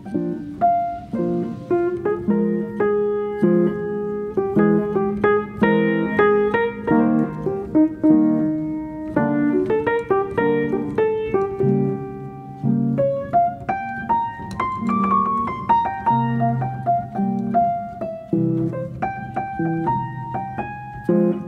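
Background piano music: a continuous run of struck notes and chords.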